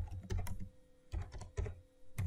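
Computer keyboard being typed on: several quick key presses in an uneven run.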